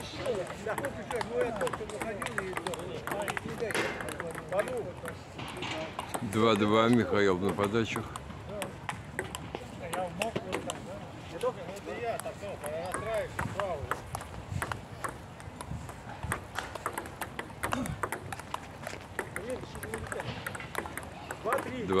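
Table tennis rally: the ball clicking off paddles and the table in quick, irregular succession.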